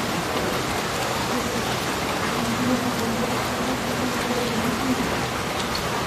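Steady rain falling on wet ground, with a faint low drone underneath that comes and goes.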